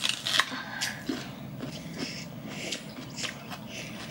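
Biting into a firm, crisp donut peach and chewing: a cluster of sharp crunches at the bite, then scattered small crunching clicks as it is chewed.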